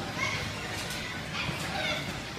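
Many children playing at once: a steady din of overlapping voices with a few high calls and shouts.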